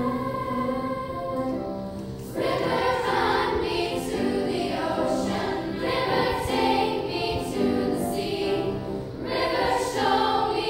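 Girls' choir singing, with the sound growing fuller and louder about two and a half seconds in.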